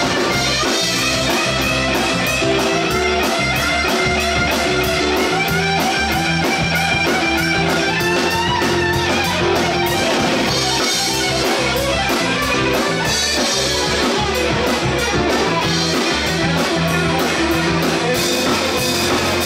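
Live rock band playing, led by an electric guitar (a PRS) over bass guitar and a steady drum beat, with no singing.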